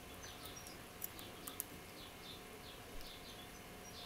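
Faint bird chirping in the background, short falling notes repeated a few times a second. A few soft clicks come from a hook pick working the pins of a City R14 cylinder lock.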